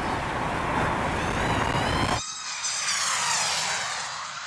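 World's fastest film drone, with its electric motors and propellers whining at full speed over a rush of wind. About two seconds in, the low rush cuts out abruptly, leaving a thinner high whine that slides up and down in pitch.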